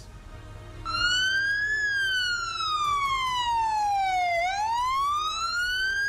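Police vehicle siren wailing, starting about a second in: a rise in pitch, a long slow fall, then a rise again.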